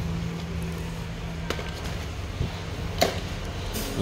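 Steady low background hum with two sharp clicks, about a second and a half and three seconds in, as a Dyson V10 cordless stick vacuum is handled. No motor sound: the vacuum is dead and does not start.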